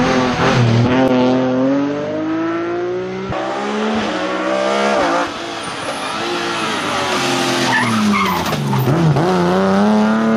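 Rally car engine under hard acceleration, its pitch climbing and then dropping sharply at gear changes about three and five seconds in. Near the end the revs fall away and climb again.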